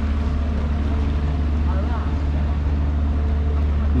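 Small motorboat's engine running steadily, a constant low drone with a steady hum of engine tones above it.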